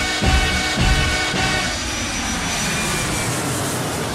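Background music with a beat gives way, about halfway through, to the steady noise of a large jet airliner's engines.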